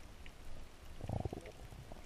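Underwater ambience picked up by a camera in its waterproof housing: a low, muffled rumble with a short cluster of low gurgling thumps about a second in and a few faint ticks.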